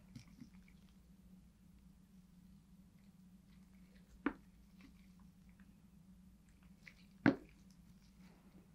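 Two short sharp taps, about three seconds apart with the second louder, as small plastic alcohol-ink dropper bottles are handled and set down on the craft table, over a faint steady low hum.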